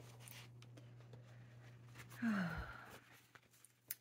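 A person's breathy sigh, falling in pitch, about two seconds in, amid faint ticks of paper and hand handling, with one sharp click near the end.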